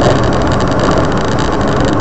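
Steady running noise of a car driving along a road, heard from inside the car: engine and tyre rumble with no change in pace.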